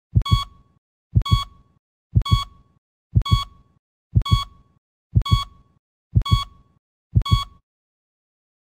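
Heartbeat sound effect: eight double 'lub-dub' thumps about one a second, each with a short high electronic beep like a heart monitor's.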